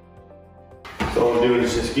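Soft background music, then about a second in the live sound cuts in loudly: a man talking over the scrape of a long-handled squeegee spreading epoxy patcher paste across a wood subfloor.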